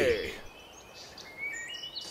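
The tail of a group of cartoon voices shouting 'Hurray!' falls in pitch and fades out in the first half-second. After that only a low background hiss, with a few short, high chirping tones near the end.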